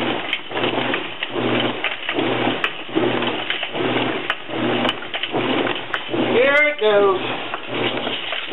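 Whirlpool WTW4950XW1 high-efficiency top-load washer running its wash action on a wet load, with a low pulse about twice a second as the wash motion swings back and forth.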